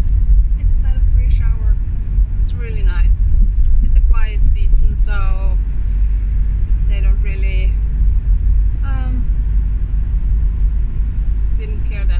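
Steady low rumble of a van on the move, heard inside the cab, with a woman's voice in short bursts over it.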